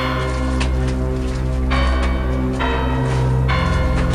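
Eerie film score: a low sustained drone with bell tones struck four times over it, each ringing on.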